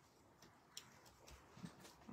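Near silence, with two faint ticks from paper and cardstock being handled.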